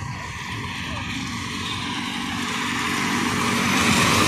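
A road vehicle approaching: engine hum and tyre hiss growing steadily louder.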